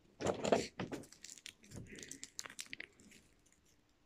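Small hard plastic pieces handled by hand, a Kinder Surprise toy capsule and its toy: a cluster of clicks and rattles about a quarter second in, then scattered lighter clicks that die away after about three seconds.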